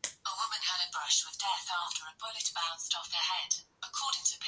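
A voice speaking in short phrases through a small smart speaker (Amazon Alexa), thin and tinny with no low end.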